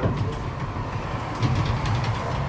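Low rumble and hum inside a tram, with a soft knock about one and a half seconds in.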